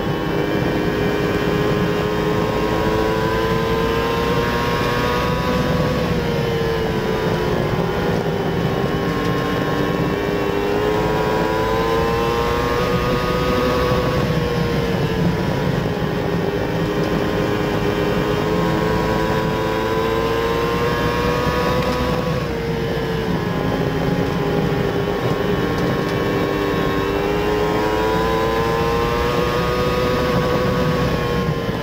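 Dwarf race car's motorcycle engine at racing speed, heard from inside the cockpit. Its pitch climbs and falls back in a smooth cycle about every eight seconds, four times, as the car accelerates down the straights and eases for the turns.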